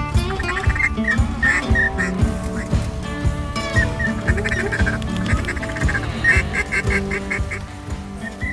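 Ducks quacking in a string of short calls, with a fast run of repeated quacks about three-quarters of the way through, over background music with long held notes.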